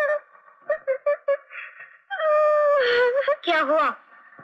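A child's voice singing a wordless tune: a few short notes, then a long held note about two seconds in that wavers near the end.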